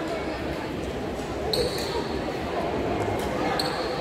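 Badminton court in a large echoing hall: two short, high squeaks of sneakers on the court floor, about two seconds apart, over a steady background of voices.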